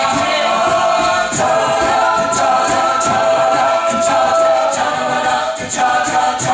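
Mixed-voice a cappella group singing held, wordless chords that shift a few times, over a regular beat of sharp high ticks from vocal percussion.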